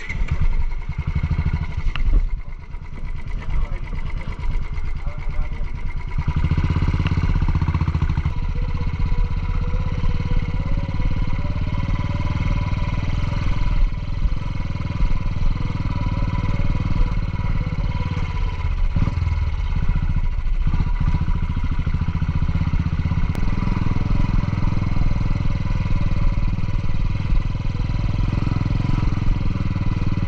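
Single-cylinder Royal Enfield motorcycle engine starting, then running as it is ridden along a rough dirt track. Its low note grows stronger about six seconds in and dips briefly twice a little before and after twenty seconds.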